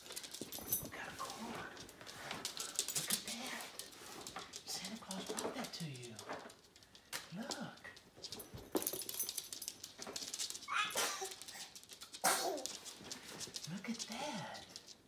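A small terrier-type dog giving several short vocal calls a few seconds apart, with light clicks and knocks in between.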